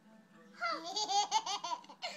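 A baby laughing while being tickled: a run of short, rising and falling peals that starts about half a second in.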